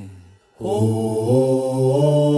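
Bollywood film-song music fades out to a brief gap, then a sustained chant-like vocal chord begins about half a second in and is held with no beat.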